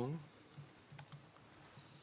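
Faint, sparse clicks of laptop keyboard typing, a few scattered keystrokes, after the tail of a spoken word at the start.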